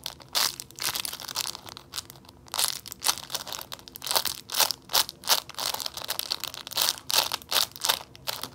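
Small clear plastic bag stuffed with toilet paper and beads, squeezed and pressed in the hands: irregular crinkling and crunching of the plastic.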